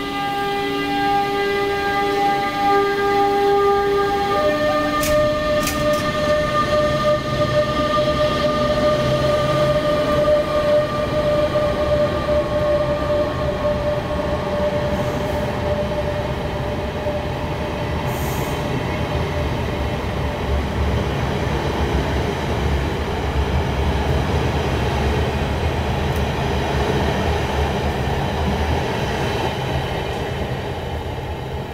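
Bombardier Traxx class 186 electric locomotive pulling out of an underground station. Its traction equipment gives a chord of steady whining tones that step down in pitch about four seconds in and fade out by about twenty seconds. The coaches then roll past with a deep, steady rumble.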